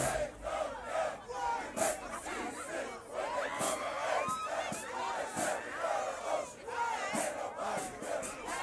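A crowd of marching band members and dancers shouting and yelling together, many overlapping voices with no instruments playing, right after the band stops.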